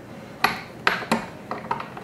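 Fly-tying vise and hand tools clicking and clinking, about six sharp metallic taps in quick succession starting about half a second in, the first the loudest, while a biot is wrapped onto the hook.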